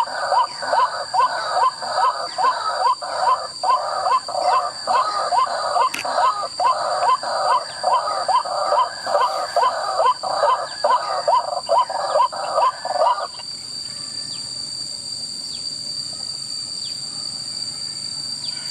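Recorded white-breasted waterhen call played from a small handheld bird-call speaker as a lure: a rapid run of the same call repeated a few times each second, with a thin, tinny sound, cutting off about thirteen seconds in. A steady high insect drone runs underneath.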